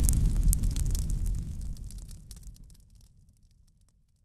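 The tail of a fiery boom sound effect for an intro logo: a low rumble with faint scattered crackles, dying away over about three seconds.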